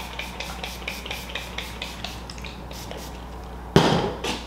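Trigger spray bottle misting water onto hair in a quick run of short hissy sprays, about five a second, thinning out after the first couple of seconds. A sharp knock near the end.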